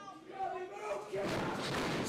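Thuds and noise from the wrestling ring as a wrestler is knocked down onto the mat, growing louder from about a second in, under faint voices.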